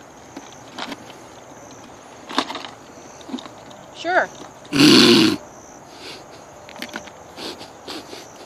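Small first aid kit being pushed and squeezed into a geocache jar, with scattered light knocks and rustles of handling. A short pitched vocal sound comes about four seconds in, followed by a loud breathy burst lasting about half a second.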